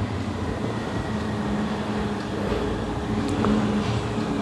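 Steady low background rumble and hum with no speech, with a faint low tone that comes and goes.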